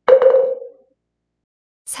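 A single sharp strike with a short pitched ring that dies away in under a second: a percussion cue at the break between chapters.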